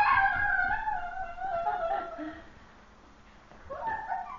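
A baby's high-pitched, drawn-out vocal squeal, wavering in pitch for about two seconds and then fading away.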